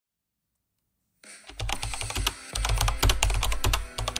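Venetian blind slats clattering as a hand pushes them apart: a fast run of sharp clicks and rattles with heavy low thumps, starting about a second in.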